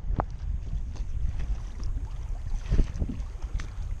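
Wind rumbling on the microphone and choppy sea water lapping against a kayak's hull, with a couple of light clicks.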